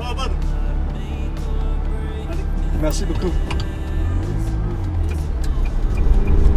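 Ferrari 360's V8 engine running at low revs, heard from inside the cabin, its note rising and wavering about four seconds in as the car moves off.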